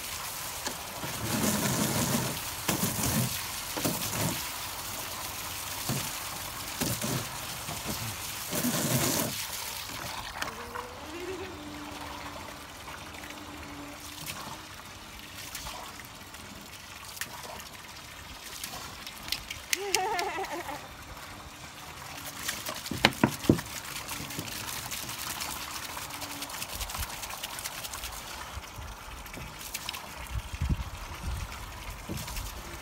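Water from a garden hose spraying into a half-filled plastic kiddie pool, with splashing as a dog bites at the stream. The splashing is loudest in the first ten seconds, then the water settles into a steadier, quieter pour.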